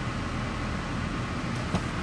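Steady hum and fan hiss inside the cabin of a parked 2015 Buick LaCrosse, its engine idling and the air conditioning blowing. A single light click comes near the end.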